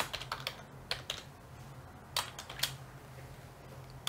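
Computer keyboard being typed on: a quick run of keystrokes in the first second or so, then a couple of single key taps about two seconds in.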